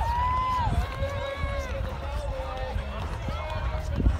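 Spectators' voices calling out and talking, held and gliding in pitch, over a steady low rumble of wind on the microphone.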